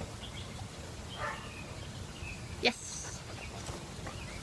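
Outdoor background with a low steady rumble and faint, short bird chirps scattered throughout. A single short, loud spoken word comes about two-thirds of the way in.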